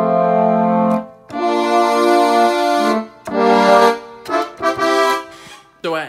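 Keyboard playing a brass horn-section patch: a few held chords, each about a second or more long with short breaks between, then a couple of shorter notes near the end.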